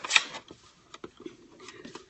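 Paper and card stock being handled on a table: a short rustle at the start, then a few faint taps and clicks.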